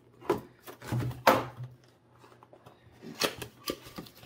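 Pocketknife blade slitting the tape seal on a small cardboard box, then the cardboard flap being pried up and the box handled: a series of short scraping and rustling sounds, the loudest a little over a second in.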